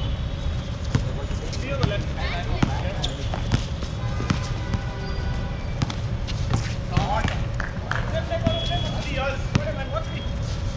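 A basketball bouncing on a hard outdoor court, sharp knocks about once a second, with players' voices calling out between them.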